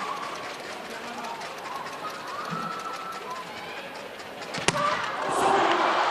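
Arena crowd hubbub, then about three-quarters of the way in a single sharp smack of a volleyball being struck on a jump serve, after which the crowd noise swells into cheering.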